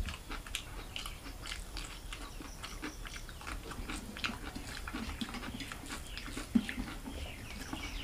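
Close-up eating sounds: chewing and lip smacking, with wet clicks of fingers mixing rice and curry on a steel plate. A run of small smacks and clicks, one sharper click about two-thirds of the way in.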